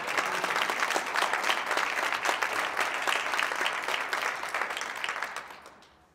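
Audience applauding, a dense clatter of many hands that dies away near the end.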